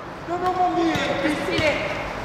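Footballers shouting to each other during play on an indoor artificial-turf pitch. A thud or two of the ball being kicked comes about a second in and again a little later.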